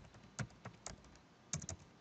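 Faint keystrokes on a computer keyboard: about seven separate key taps, three in quick succession near the end.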